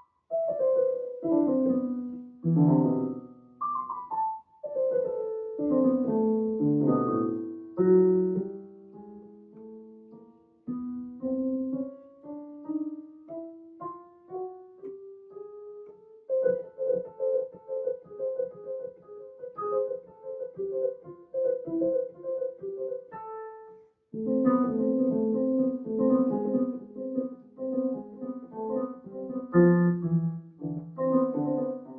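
Yamaha digital piano played solo: sweeping broken-chord runs and rising lines in the first half, then steadier repeated notes. There is a brief pause about three quarters of the way in, then a louder passage.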